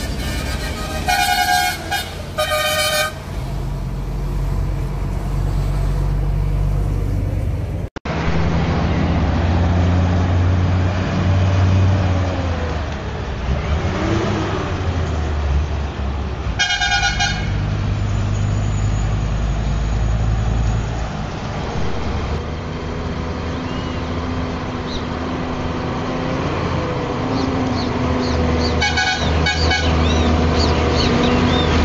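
Truck horn blown twice in quick succession over a diesel engine's steady drone; then a truck's diesel engine runs on, with another horn blast about halfway through and a few short blasts near the end.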